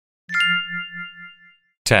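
A single bell-like chime sounds about a third of a second in, ringing with several steady high tones over a low throbbing hum and fading away over about a second and a half. It is a cue chime marking the start of a new section of the recording. A spoken word begins near the end.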